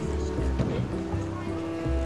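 Background music: sustained chords over a low bass line that changes note about every half second.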